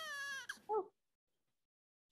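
A short high-pitched cry about half a second long, holding a near-steady pitch, followed by a brief soft 'oh'.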